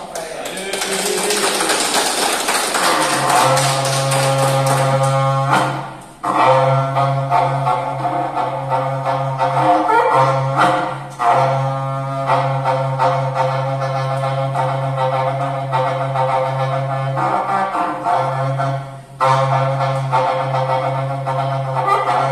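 Berrante, the Brazilian ox-horn cattle-calling trumpet, blown in long, steady, low calls held at one pitch, broken by short pauses for breath about every five seconds. The first few seconds hold a rushing noise before the horn's tone settles.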